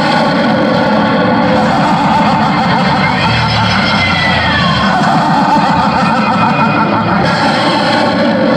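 Loud loudspeaker soundtrack of music and dramatic effects, dense and distorted, with a tone that glides downward in the middle.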